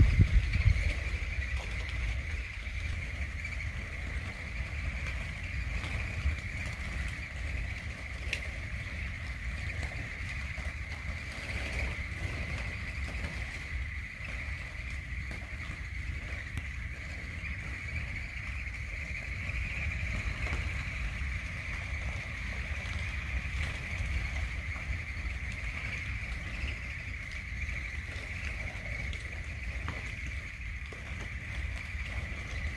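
Wind rumbling on the microphone, strongest at the very start, over a steady high-pitched drone.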